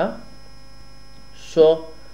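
Steady electrical hum with a faint, constant high whine in the recording, heard alone for over a second. A man says one short word near the end.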